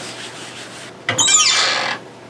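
A hand rubbing and smoothing a cotton t-shirt flat on a screen printing press platen. About a second in, a louder squeak falls in pitch over most of a second with a hiss under it.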